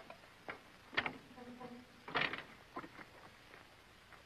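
A few faint, scattered knocks and clicks, with a brief faint hum about a second and a half in.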